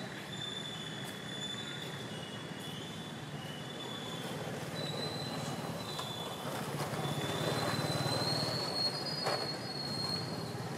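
A thin, high insect whine, stepping slightly up and down in pitch, over a steady outdoor noise background, with one sharp click near the end.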